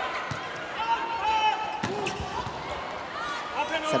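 Indoor volleyball rally: a few sharp hits of the ball, two of them close together about two seconds in, over the steady murmur of an arena crowd, with short squeaks of shoes on the court.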